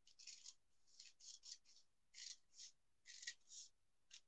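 Scissors cutting through a sheet of glossy magazine paper: faint, short snips, about a dozen over the few seconds.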